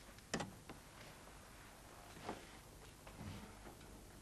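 Faint footsteps, a few irregular knocks of boots on the floor, the sharpest about a third of a second in.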